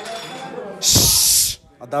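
A loud hiss lasting a little under a second, the loudest sound here, starting and stopping abruptly, with voices in a crowded room before and after it.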